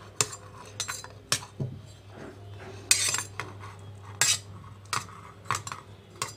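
Steel pan and utensil clinking and scraping as cooked carrot, tomato and green chilli pieces are scraped into a stainless steel mixer-grinder jar. It is a run of irregular clinks, with longer scrapes about three seconds in and again about four seconds in.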